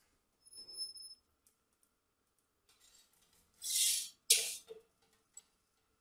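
A foil-lined metal baking tray is slid onto an oven's wire rack: a soft rustle with faint metallic ringing, then about four seconds in a loud scrape of foil and metal followed at once by a sharp clank as the tray settles.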